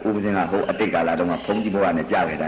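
Only speech: a man talking steadily, with no other sound standing out.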